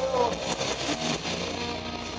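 Live rock band with electric guitars, bass and drums. Drum and cymbal hits fill the first second or so. Then the sound thins to held guitar tones that slowly die away.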